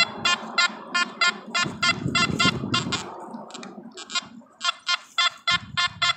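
Nokta Makro Anfibio Multi metal detector sounding a rapid series of short beeps as its coil sweeps over a dug hole, with a soft rustle of the coil over dirt and leaves about two seconds in. The beeps signal a metal target still in the hole's sidewall, which the detectorist takes for another pull-tab beaver tail.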